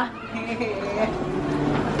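Quieter voices of people talking in the background, softer than the laughter and talk just before.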